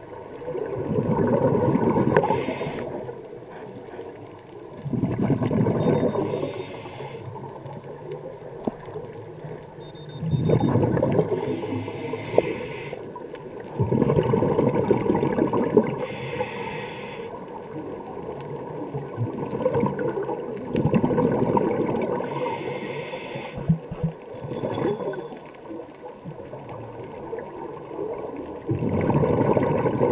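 Scuba diver breathing through a regulator underwater: a bubbling exhalation followed by a hissing inhalation, with a breath about every four to five seconds.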